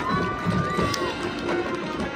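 High school marching band playing its field show: one held high note that droops and ends about a second in, over low drum beats.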